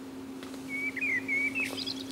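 A small bird chirping: a quick run of short chirps begins about a third of the way in, with a couple of higher notes near the end, over a steady low hum.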